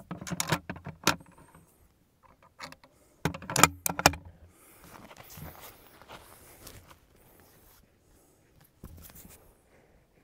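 Metallic clicks and clacks from handling a Mauser 1918 Tankgewehr 13.2 mm anti-tank rifle as it is readied to fire: a flurry of clicks in the first second, a louder pair of clacks about three and a half seconds in, then soft rustling and a few faint clicks.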